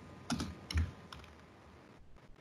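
Computer keyboard typing: a short run of keystrokes, typing text into a box, over in about a second.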